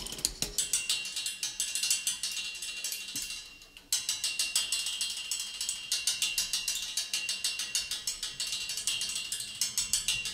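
Fast, even mechanical ticking like a clock's, about five sharp clicks a second. It fades out briefly before the four-second mark and starts again abruptly.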